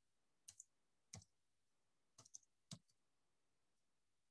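Faint, scattered keystrokes on a computer keyboard as a word is typed, about seven taps in small groups with near silence between.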